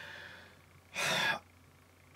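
A man breathing between sentences: a faint breath out fades away in the first half second, then he draws one quick, audible breath in about a second in.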